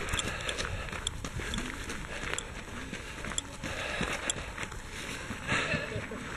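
Running footsteps on a gravel path, a steady series of short scuffing steps at running pace, picked up by a camera carried by the runner.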